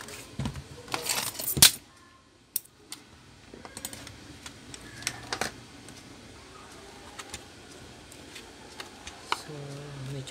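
Hands handling a plastic portable Bluetooth speaker: a cluster of sharp clicks and rattles from its casing about a second in, the loudest sound, then scattered lighter clicks and taps as it is set down on a rubber repair mat and picked up again.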